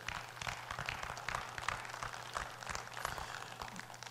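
Scattered applause from a church congregation, faint and irregular.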